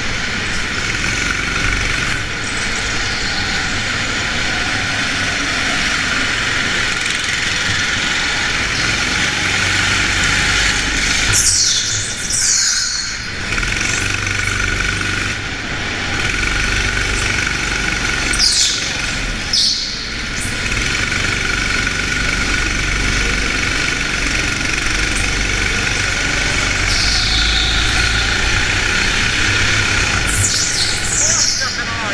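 Onboard sound of a go-kart engine running at racing speed, with the tyres squealing through corners: two clear squeals about twelve and nineteen seconds in, and a shorter one near the end, the engine dipping briefly as each squeal fades.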